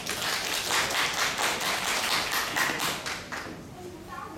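Audience clapping at the end of a piano performance, a dense patter of many hands that thins out near the end.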